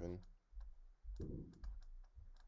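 Pen stylus clicking and tapping on a drawing tablet during handwriting: many small, irregular clicks.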